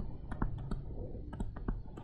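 Light, irregular clicks and taps of a digital pen stylus on a tablet surface during handwriting, several to the second, over a low hum.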